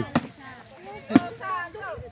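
Two sharp whacks about a second apart as a wooden stick is swung at a piñata, with children's voices between them.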